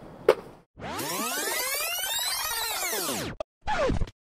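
Edited intro sound effect: a dense, layered sweep arching up and then down in pitch for about two and a half seconds, then after a short break a quick downward-gliding drop.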